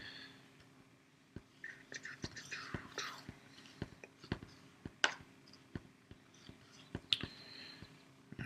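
Round plastic magnetic markers being set one after another onto a magnetic coaching board: a string of light, separate clicks, about one or two a second.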